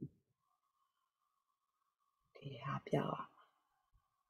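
Mostly quiet room tone, then a brief burst of a person's voice about two and a half seconds in, lasting under a second.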